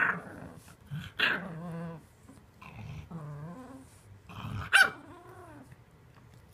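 English bulldog puppy growling in about four short bouts, the pitch bending up and down, the loudest near the end, as it wrestles and tugs at its plush bed with its mouth.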